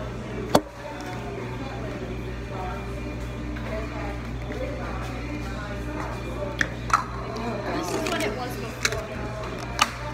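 Restaurant ambience: background music and indistinct talk, with a loud sharp knock about half a second in and a few smaller clicks and clatters in the last few seconds.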